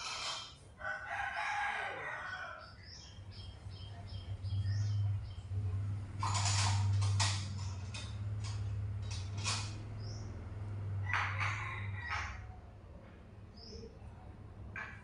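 A bird gives one long call about a second in, dropping in pitch at its end, followed by a run of short high chirps. A low steady hum and a few noisy bursts follow, the loudest about halfway through.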